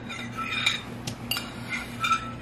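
Light clicks and clinks of a plastic bowl and bin of water beads being handled, about five separate taps spread over two seconds.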